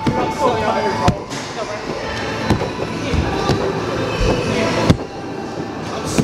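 Indistinct voices and background music in a large hall, with two sharp slaps or thumps, one about a second in and a louder one near the five-second mark.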